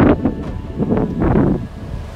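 Wind buffeting the microphone in gusts, with small waves breaking on a sandy beach beneath it; the gusts ease about a second and a half in.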